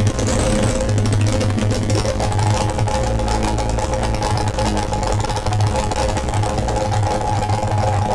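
Eurorack modular synthesizer playing a chaotic, noisy electronic drone: a Benjolin chaos oscillator through an Excalibur filter, a matrix mixer and a short delay. A throbbing low pulse runs under steady pitched tones and a grainy crackle, and a higher tone joins about two seconds in as the knobs are turned.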